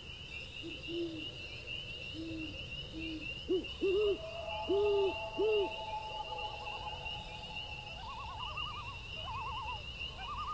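An owl hooting, a run of short low hoots in the first half, the later ones louder, followed by longer higher calls that turn into wavering trills near the end. A steady high pulsing trill runs underneath.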